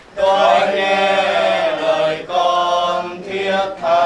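A group of voices singing a Vietnamese Catholic prayer hymn together in unison, in held phrases of about two seconds each with brief breaks between them.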